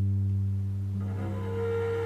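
Pre-recorded cello playing back: a low bowed note held steadily, with a higher note joining for a moment about a second in.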